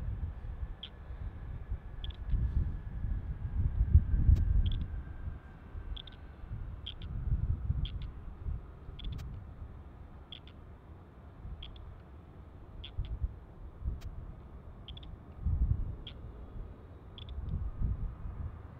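Wind buffeting the microphone in uneven gusts of low rumble, under the faint steady whine of the Boeing 757's jet engines on final approach, slowly dropping in pitch. A faint, short, high chirp repeats about once a second.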